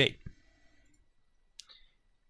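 A single computer mouse click about one and a half seconds in, selecting an option on screen.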